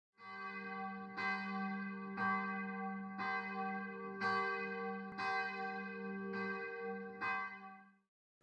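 A single church bell tolling, struck about once a second, each stroke ringing on into the next at the same pitch; the ringing fades out just before the end.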